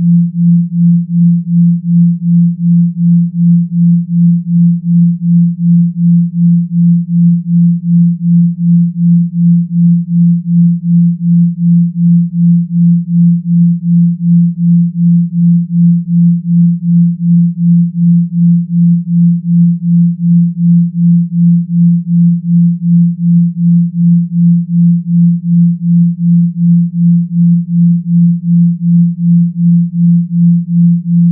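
A single low pure tone held at a steady pitch, pulsing evenly in loudness about two to three times a second: a brainwave-entrainment beat tone.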